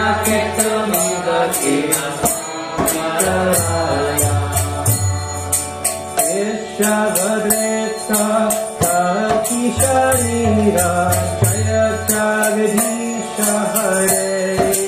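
A man leading a devotional mantra chant, his sung melody gliding over a steady low drone, with a regular beat of small metal hand cymbals several times a second.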